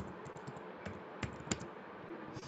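Keys tapped on a computer keyboard as a short word is typed: a handful of scattered clicks, the two sharpest about a second and a half in.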